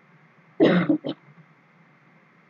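A person clearing their throat: a short noisy burst about half a second in, followed by a brief second one.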